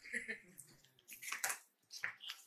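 Faint, broken snatches of a man's voice with a few scattered clicks and knocks.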